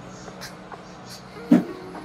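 Stiletto high heels clicking on a hard laminate floor as someone walks in them, a few scattered heel strikes with one louder knock about one and a half seconds in.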